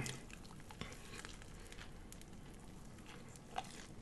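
Faint close-miked chewing of a bite of corned beef sandwich: small wet mouth clicks and crackles, with one slightly louder click near the end.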